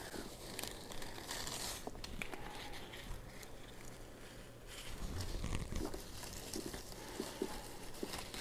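Faint, irregular rustling and crinkling of leafy radish plants being handled and pulled from perlite-filled net pots, with small clicks, and a few soft low bumps about five seconds in.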